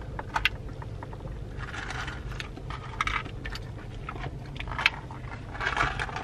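Ice rattling and clicking in a plastic cup of iced coffee, with a few short sips through a straw, over a low steady car-cabin rumble.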